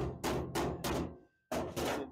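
A hammer striking the sheet steel of a new drop-in floor pan to work it down into place. There are about four quick blows, a short pause, then two more.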